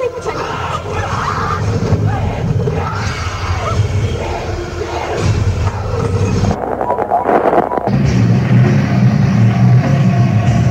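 Harsh noise music from a lo-fi noisecore tape: a dense, distorted wash with shifting pitches and no steady beat. About eight seconds in it settles into a steady low distorted drone.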